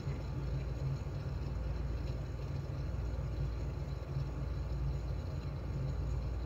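Steady low background rumble and hum of room noise, with no distinct events.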